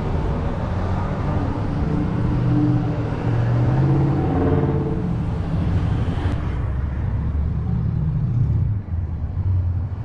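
Road traffic passing close by on a multi-lane street: car engines and tyres running steadily, with a louder engine drone in the middle stretch and the tyre hiss thinning out a little after six seconds in.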